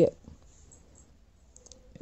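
The end of a spoken word, then a quiet pause of room tone with a few faint clicks shortly before speech resumes.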